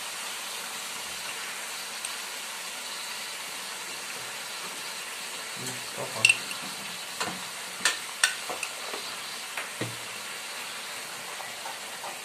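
Chicken and vegetables sizzling steadily in a metal wok on a gas burner. About halfway through come a few sharp clinks and knocks of utensils against the wok.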